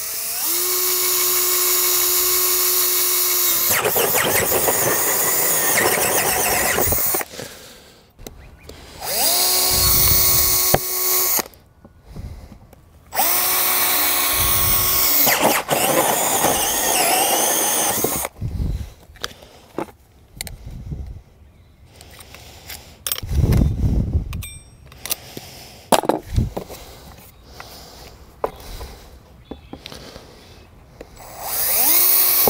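Cordless drill with a hole saw cutting into the plastic wall of an irrigation valve box, in three runs: a long one of about seven seconds, then two shorter ones. Scattered knocks and thumps follow in the second half.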